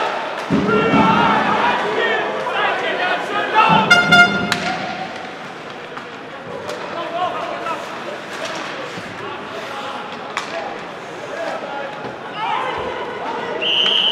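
Ice hockey rink sound: nearby spectators' voices for the first few seconds, then a short horn blast about four seconds in. Scattered sharp knocks of puck and sticks against the boards follow, and a referee's whistle sounds near the end.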